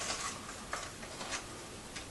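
Folded paper slips rustling faintly in a hat as a hand rummages through them, with a few soft crinkles and ticks.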